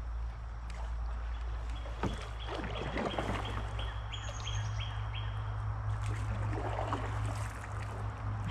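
Bird song from the riverside trees: a run of short, high, evenly repeated notes from about two seconds in, over a steady low rumble, with a paddle swishing in the water.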